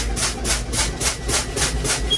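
Truck air brakes hissing as the brake pedal is pumped rapidly, a fast, even run of short air bursts about four a second over the low rumble of the idling diesel engine. Each burst is air exhausting from the brake system, bleeding pressure down toward the 60 psi low-air warning.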